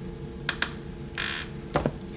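Paperback books being handled: two light clicks, then a short rustle past the one-second mark and a knock near the end as one book is set down and the next is reached for. A faint steady hum runs underneath.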